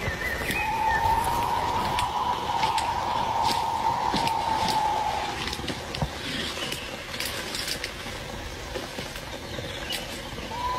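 A single drawn-out, steady, high-pitched wail of unknown origin lasting about four and a half seconds, heard over crunching and rustling of dry leaves underfoot in woodland. It is a sound the reactor takes to be fake, dubbed into the clip.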